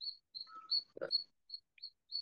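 Small bird chirping: a run of short, high, same-pitched chirps, about three or four a second, with a soft knock about halfway.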